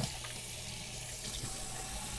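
Steady rush of water running through a large aquarium's filtration, with a faint low steady hum underneath.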